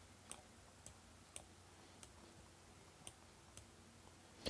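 Faint computer mouse clicks over near silence, about seven of them spaced roughly half a second apart.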